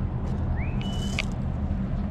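Steady low outdoor rumble with a short, high-pitched chirp about half a second to a second in: a rising note, then a briefly held one.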